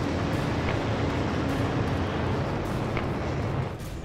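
Steady rushing roar of the Mars Science Laboratory sky crane descent stage's rocket thrusters firing, heavy in the low end, with a faint steady hum under it.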